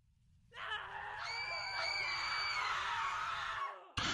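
People screaming, several voices at once, starting about half a second in and lasting about three seconds before cutting off.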